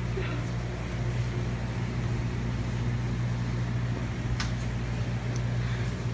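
Steady low electrical hum of running machinery, with one faint click about four and a half seconds in.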